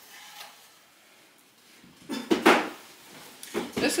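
Handling noise at a kitchen counter: things being picked up and moved, with a loud brief rustle and knock about two seconds in and a smaller one near the end.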